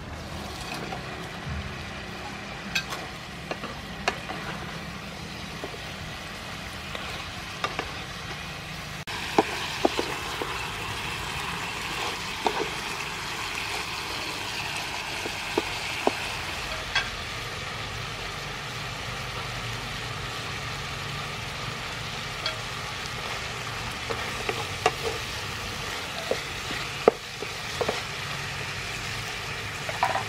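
Fish pieces frying in sauce in a pan, with a steady sizzle that grows a little louder about nine seconds in. Scattered short knocks of a wooden spatula against the pan as the fish is turned.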